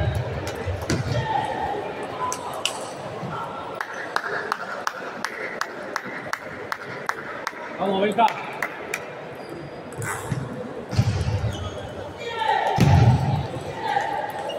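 Table tennis ball clicking off bats and table in a steady rally, about two to three hits a second, stopping about eight seconds in. A hall babble of voices and balls from other tables runs underneath, and voices call out near the end.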